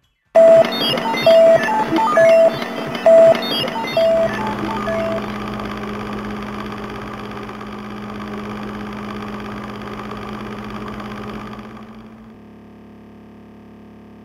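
Logo sound effect: a short beeping tone repeated about once a second, six times, over a clattering rhythm. It then settles into a steady mechanical hum that drops to a lower level near the end.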